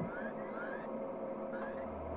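Faint steady electronic hum of a spacecraft pod's interior, a film sound effect, with three short, faint rising chirps.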